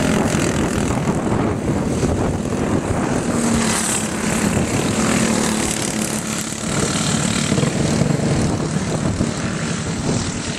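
Several racing go-kart engines running as the karts lap the track, a steady drone throughout.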